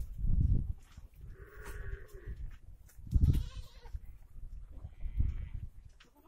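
Goats bleating, about three calls, over low rumbling thuds that are louder than the calls.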